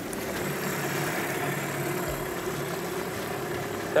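Boat's outboard motor idling steadily.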